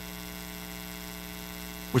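Steady electrical mains hum: a low, unchanging drone with fainter evenly spaced buzzing tones above it.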